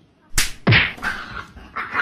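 A dog barking in short, sharp barks: a loud one just after half a second in and a smaller one near the end.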